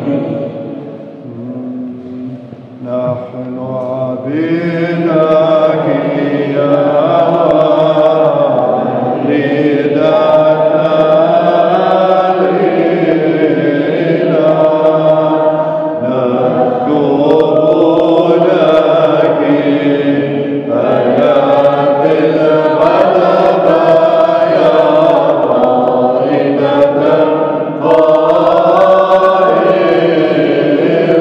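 Byzantine liturgical chant sung by several voices in long sustained phrases with short pauses between them. It starts softly and fills out about four seconds in.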